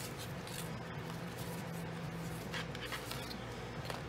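Card stock rustling and crackling in short bursts as the glued paper rings of an accordion card are handled and pulled open, over a steady low hum.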